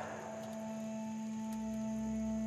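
Soft background music score: a quiet chord of sustained held notes, with a low swell coming in about halfway.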